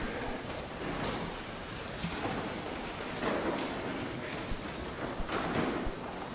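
Church room noise while people move about: a steady hiss with soft, irregular rustles and shuffles and a few faint clicks.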